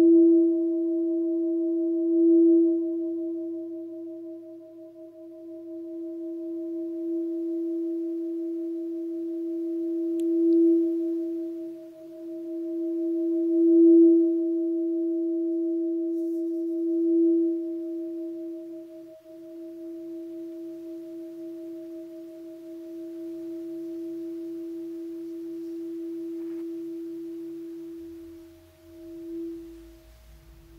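A singing bowl ringing one steady mid-pitched tone with a slow wavering beat. It swells with fresh strikes about five times, then rings on more quietly through the second half.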